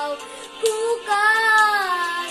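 A boy singing a slow song over music accompaniment. He sings a short note a little over half a second in, then holds a long note through the second half that swells and bends in pitch.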